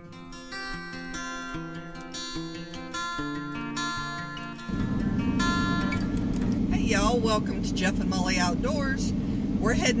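Background music with plucked notes for the first five seconds or so, then a sudden change to the steady road and engine noise inside a moving car, with voices talking over it.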